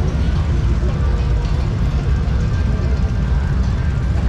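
Motorcycle engines running, with voices of people around them: a steady, loud mix with heavy low rumble.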